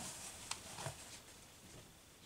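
Faint handling noise as a strip of black elastic band is lifted off a cloth-covered table and its two ends brought together by hand, with two light ticks in the first second.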